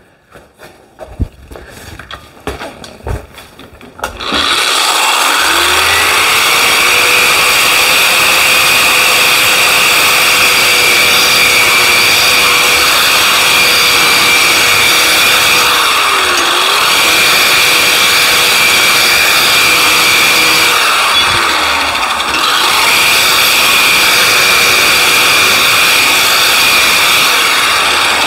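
A few knocks, then a handheld electric drum sander starts about four seconds in. It runs with a steady motor whine and abrasive scrubbing as it polishes a length of 3/4-inch square tubing. Its speed dips once midway, and later it briefly winds down and spins back up.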